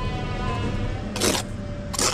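A steel trowel scrapes once through mortar about a second in, and there is a shorter knock near the end. A steady low hum and a faint steady tone run underneath.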